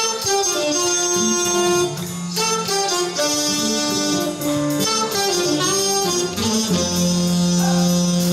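Live big band playing a song's instrumental introduction: melodic lines and sustained chords over a steady beat.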